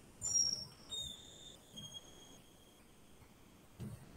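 Three short, high-pitched chirping tones, each lower than the one before, within the first three seconds over faint room noise.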